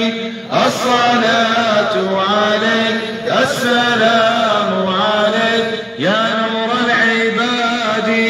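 Islamic devotional chanting by male voices: long melismatic phrases in Arabic over a steady held drone note, a new phrase starting about every three seconds.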